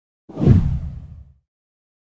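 A single whoosh transition sound effect with a low boom under it, starting suddenly a moment in and fading away within about a second.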